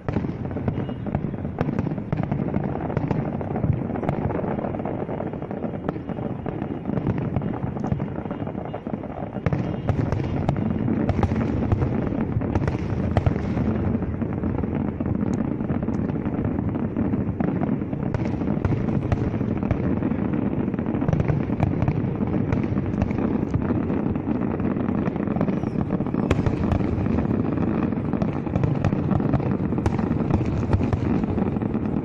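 Aerial fireworks display: a rapid, continuous barrage of bangs and crackling bursts, a little heavier from about ten seconds in.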